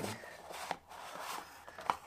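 Small handling noises: light rustling and scattered clicks as a small object is picked up and handled, with one sharper click near the end.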